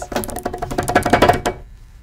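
A rapid drumroll that stops about one and a half seconds in, building suspense before a winner is announced.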